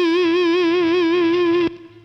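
Overdriven electric guitar, a Fender American Standard through a Marshall 1987X amp, holding one note with a regular vibrato, which cuts off abruptly shortly before the end.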